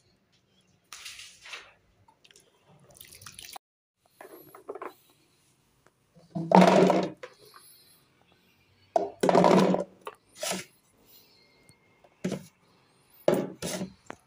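Hands scooping green olives out of a bucket of water: splashing and dripping water in about eight short separate bursts, the loudest around the middle.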